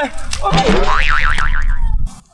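Cartoon 'boing' sound effect, its pitch wobbling up and down several times, added to a slapstick fall for comic effect, following a short cry of 'hai'.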